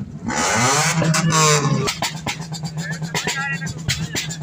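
A car engine revs once, loud, its pitch falling away over about a second and a half. After that, music with a steady beat plays.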